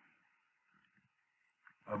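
Near silence: a faint steady hiss of room and microphone noise, with a couple of faint clicks near the end, just before a man's voice resumes.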